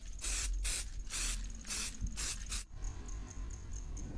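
Samurai Paint aerosol spray can spraying white base coat onto a helmet in a series of short hissing bursts, the nozzle pressed and released repeatedly; the spraying stops about two-thirds of the way through.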